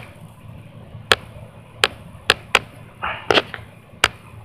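A series of about six short, sharp clicks at uneven intervals, with a brief soft rustle-like noise just before the last two.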